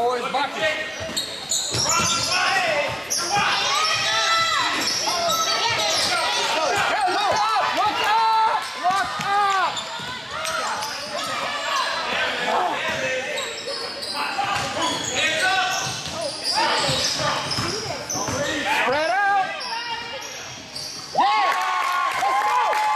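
Live basketball game in a gym: a basketball bouncing on the hardwood court and sneakers squeaking in many short high chirps, with players and spectators calling out, all echoing in the hall.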